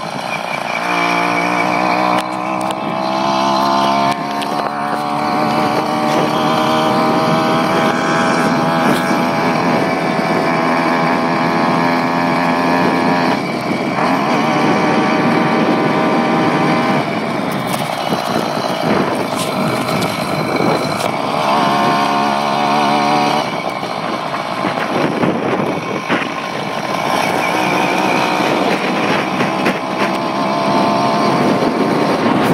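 A 66cc two-stroke bicycle engine running under load while the bike is ridden. Its pitch climbs over the first few seconds as it accelerates, then holds, with several dips and climbs as the throttle is eased and opened again.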